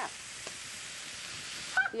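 Sausage sizzling as it browns in a frying pan. The hiss is steady and cuts off suddenly near the end.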